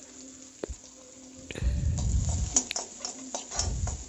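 Onion, green chilli and curry leaves frying in oil in an aluminium kadai, stirred with a plastic spatula. It is faint at first; from about one and a half seconds in come sizzling and spattering, with scraping and sharp knocks of the spatula against the pan.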